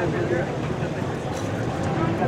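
Indistinct chatter of nearby voices over the steady low hum of race car engines running in the background at a dirt track.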